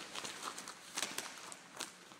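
Faint rustling with a few soft taps and scrapes as an elastic exercise band is pulled up over the shoes and legs.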